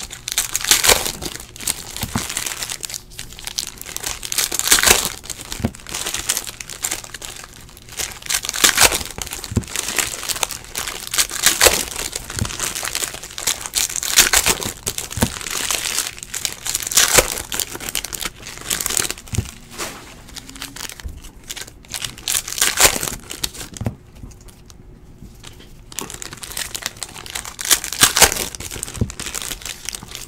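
Foil wrappers of Upper Deck hockey card packs being crinkled and torn open by hand: an irregular run of crackling rustles, with a brief lull a few seconds before the end.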